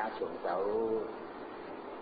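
A Thai Buddhist monk's voice reciting a line of verse in a sing-song chant, drawing one syllable out into a long held, wavering tone about halfway through.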